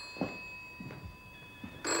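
Desk telephone bell ringing in a double-ring pattern: one double ring dies away at the start, and the next ring begins just before the end, with a few faint soft knocks in the pause between.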